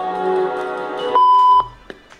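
Music from the compilation clip with sustained notes, cut off just past a second in by a loud, steady electronic beep lasting about half a second; after the beep the sound drops away.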